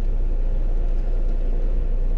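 Semi-truck driving at highway speed, heard from inside the cab: a steady low engine and road rumble that doesn't change.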